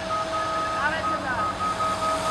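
A US Army Stryker eight-wheeled armored vehicle driving past, its engine running under a low rumble with a high whine that pulses on and off.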